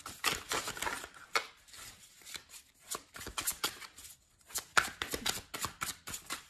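A Tarot Illuminati deck shuffled by hand: a fast, irregular run of card slaps and riffles.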